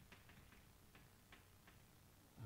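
Chalk tapping on a blackboard as formulas are written: faint, irregular clicks, a few per second, over near silence.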